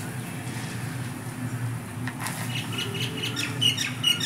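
A small bird chirping, short high calls repeated several times from about two seconds in, over a low steady hum.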